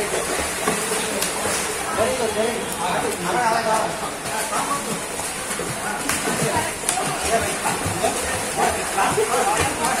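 Children's voices over water splashing in a pool.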